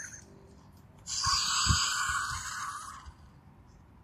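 Untamed Fingerlings dinosaur figure playing a raspy electronic growl from its small speaker, starting about a second in and lasting about two seconds, with a few soft thuds of the toy being handled.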